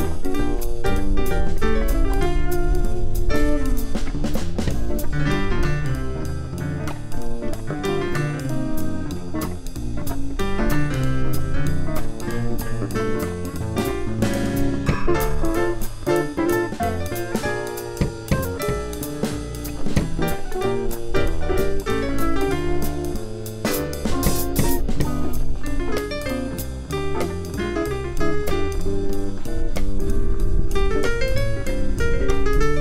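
Small jazz combo playing live: electric guitar, drum kit, plucked upright bass and electric piano, with a continuous bass line and cymbals over the drums.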